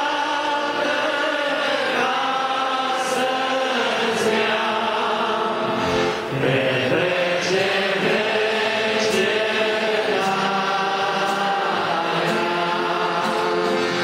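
A congregation of men's and women's voices singing a hymn together, in long held notes, with a short pause for breath about six seconds in.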